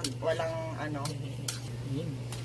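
Chopsticks and a fork clicking against ceramic and metal plates as noodles are lifted, a few sharp ticks, with a brief bit of voice near the start and a steady low hum underneath.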